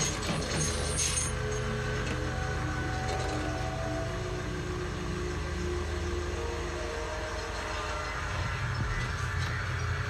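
TV drama soundtrack playing through speakers: a steady low rumble under faint, held tones of tense background music.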